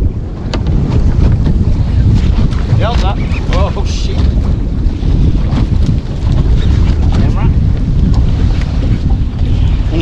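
Wind buffeting the microphone on a small boat at sea: a loud, steady low rumble, with a few faint clicks.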